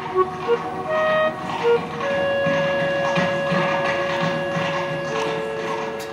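Background music: a few short notes, then long held notes from about two seconds in.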